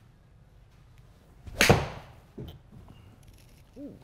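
Mizuno JPX 923 Hot Metal 7-iron striking a golf ball off a hitting mat into a simulator screen: one sharp, loud impact about one and a half seconds in.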